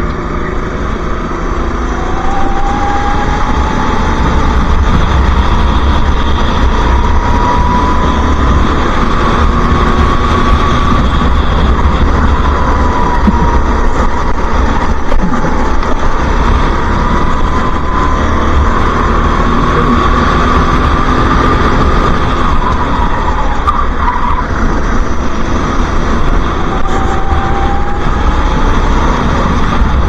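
Racing kart engine heard from onboard at full race pace, its pitch rising and falling again and again as it accelerates out of corners and lifts into the next, over a steady low rumble.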